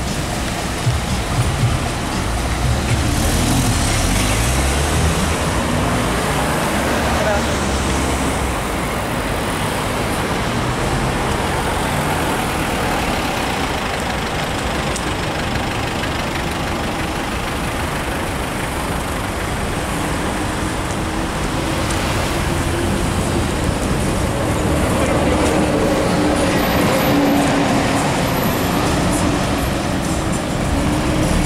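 Steady city street traffic: car engines idling and moving slowly in a queue, with low engine sound throughout.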